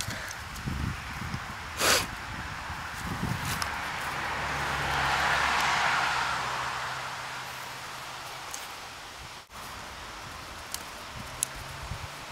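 Labrador puppy chewing on a stick and scuffling in the grass, with a sharp knock about two seconds in. A rushing noise swells and fades over a few seconds in the middle, with a faint low hum beneath it.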